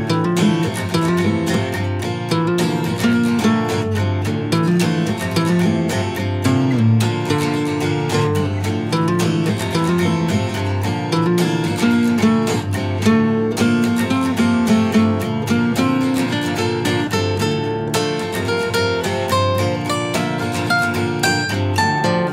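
Two acoustic guitars playing together, an instrumental passage of an acoustic folk-rock song with no singing, many plucked and strummed notes ringing on.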